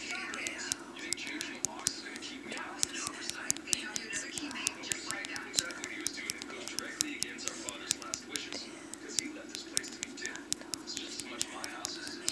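Rapid, irregular taps of a phone's keyboard clicks as a text message is typed, several a second, over faint whispering and a steady low hum.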